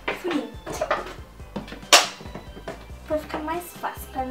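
A spoon knocking and scraping in a plastic tub of thick, foamy slime, with one sharp clack about two seconds in.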